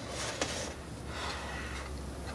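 Steady low electrical hum from a homemade ZVS driver circuit powering a switch-mode-power-supply ferrite transformer, with a faint hiss at first and a single click about half a second in.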